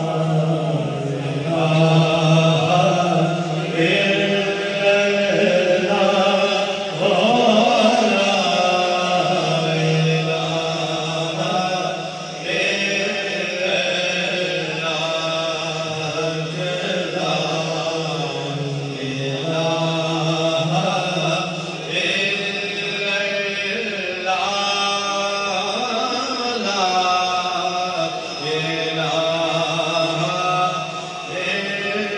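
A young man singing a naat, a devotional poem in praise of the Prophet, into a microphone, in long phrases of held, ornamented notes.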